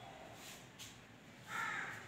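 A crow cawing once, a short harsh call about a second and a half in.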